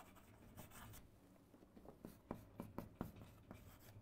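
Faint writing sounds: a run of short, quick strokes, bunched in the second half.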